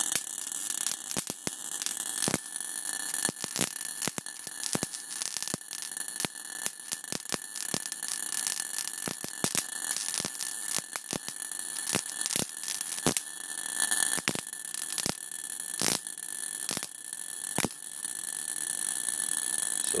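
High-voltage spark gap of an air-cored Don Smith-style resonant step-up coil running with a steady hiss and high buzz, broken by many irregular sharp snaps as sparks jump from a terminal strip to a hand-held probe.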